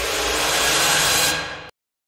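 A swelling rush of noise, a trailer sound-design whoosh, that grows for about a second and then fades and cuts off abruptly to silence near the end.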